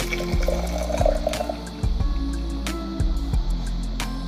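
Brewed black tea poured from a steel saucepan through a mesh strainer into a glass jar, the splashing pour strongest in the first couple of seconds and then dwindling, over background music with sustained notes.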